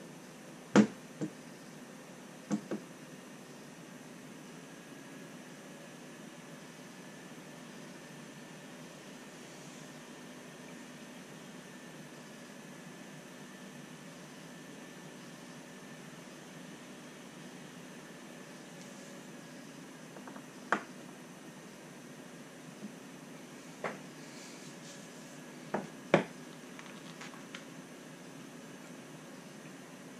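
Small hard parts clicking and knocking on a workbench as parts are handled and set down, against a steady hiss of room noise. There is a pair of sharp clicks about a second in and another pair shortly after, then a scattered run of clicks in the last third.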